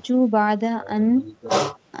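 Speech only: one person speaking in short phrases, with a hissing consonant about one and a half seconds in.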